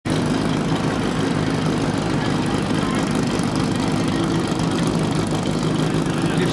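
Portable fire pump engine idling steadily, with an even low running note.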